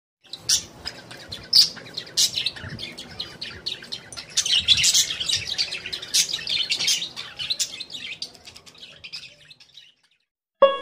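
Small birds chirping in a busy, overlapping run of short high chirps, busiest around the middle and fading out shortly before the end.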